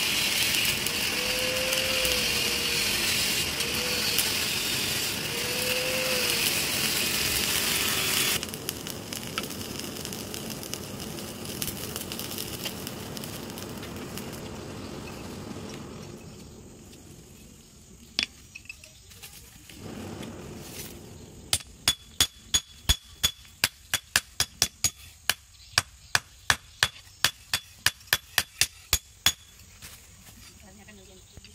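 Air blower on a charcoal forge running with a steady rush, fanning the fire, then cut off about eight seconds in and fading as it spins down. Later, a regular run of sharp metallic clinks, about three a second, each with a short ring.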